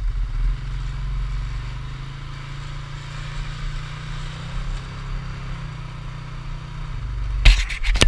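Polaris Sportsman ATV engine running at a steady low speed over a rough, rocky trail, with a steady hiss above the engine hum. A sudden loud knock and clatter comes near the end.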